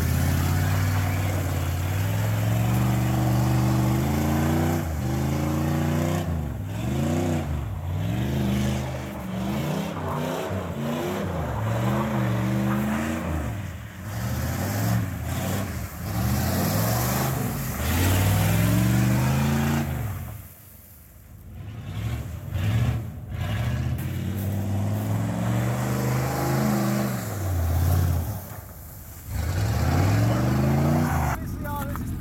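Chevrolet K1500 pickup's engine revving up and falling back over and over as the truck spins its wheels on snow and slush. The engine drops away briefly about twenty seconds in, then picks up again.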